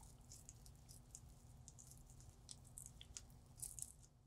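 Near silence with faint scratchy ticks as a diamond IPR strip rasps between the plastic teeth of a typodont. A few ticks are louder near the end.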